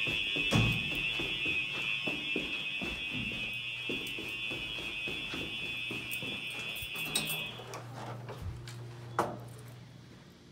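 Simplex 4903 electronic fire alarm horns sound a continuous, non-temporal steady tone, which cuts off abruptly about three-quarters of the way through when the system is silenced. Footsteps on carpeted stairs and floor run under it, with a knock near the end.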